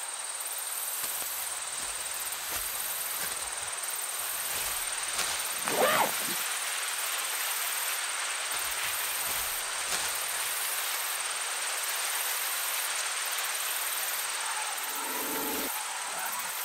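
Night-time field ambience: a steady high chirring of insects, pulsing about once a second. A short pitched animal call stands out about six seconds in, and a faint pitched sound comes near the end.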